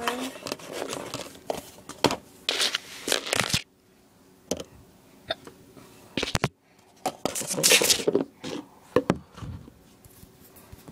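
A sigh, then irregular rustling, crinkling and sharp clicks of a phone and nearby objects being handled close to the microphone. The sounds thin out for a few seconds mid-way, then a loud burst of rustling comes about three-quarters of the way through.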